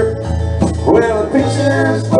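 Live band playing a country song in rehearsal, guitars over a sustained bass note.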